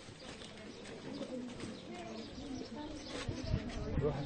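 Pigeons cooing, low and soft, over the faint chatter of a group of people.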